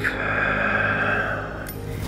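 A person's long, steady breath out, heard as a soft rushing hiss that fades off near the end.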